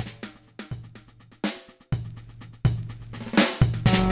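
Breakbeat drum pattern from an electronic nu-jazz track: kick drum, snare and fast hi-hat ticks, with short low bass notes under some of the hits.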